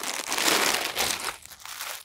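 Clear plastic packaging crinkling as a suit set in its plastic bag is handled and lifted, dying away near the end.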